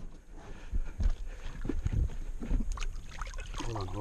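Lake water sloshing against a metal boat hull, with a few low knocks, as a large musky is held in a landing net alongside the boat. A voice starts briefly near the end.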